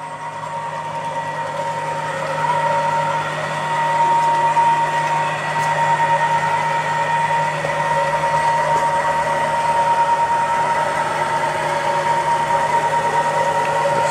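Stepper motors and drivers of a home-built CNC router giving a steady high-pitched whine over a low hum, with the whine slightly louder after the first few seconds.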